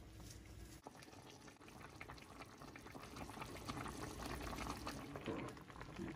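Pot of miswa soup with patola and squid balls simmering: faint bubbling broth, with a ladle stirring through it.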